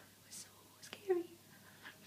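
Soft whispering and breathy voice sounds, with one short voiced sound about a second in.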